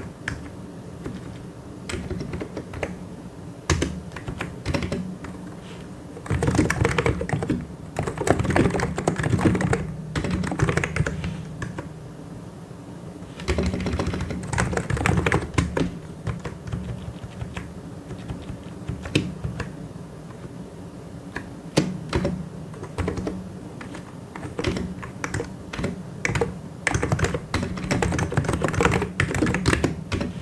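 Typing on a computer keyboard: fast runs of keystrokes alternate with slower stretches of scattered single keypresses and short pauses.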